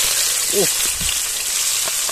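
Hot oil in an aluminium pot sizzling steadily as sliced onions are tipped into it.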